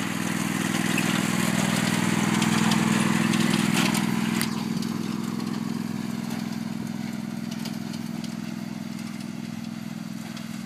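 Riding lawn mower's small engine running steadily as it drives across the yard. The sound is loudest a few seconds in, then slowly fades as the mower moves away.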